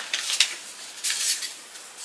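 Soft paper rustling and light handling noises as a greeting card is drawn out of its paper envelope.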